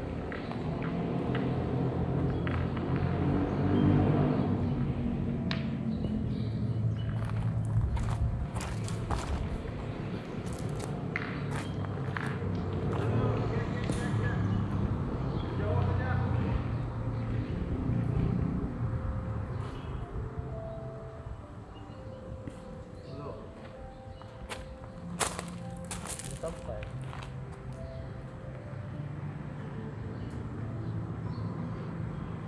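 People's voices talking, with music underneath and a few sharp knocks scattered through.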